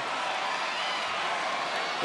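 Steady crowd noise from a large arena audience, a continuous wash of cheering voices.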